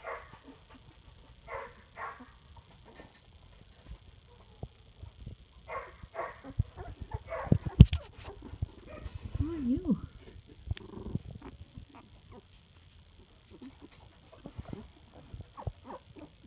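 Young puppies whimpering and squeaking in short, scattered cries, with a low wavering whine that rises and falls twice about ten seconds in. A sharp thump about eight seconds in, and small clicks of handling near the end.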